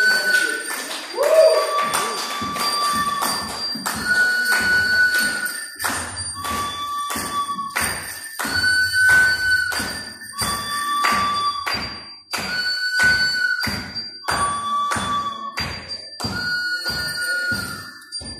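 Looped experimental electronic music over loudspeakers: dense clattering clicks and knocks under a held tone that alternates between a higher and a lower pitch about every two seconds.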